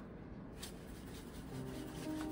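Quiet kitchen room tone with one faint tap about half a second in. Soft background music with steady held notes fades in about three-quarters of the way through.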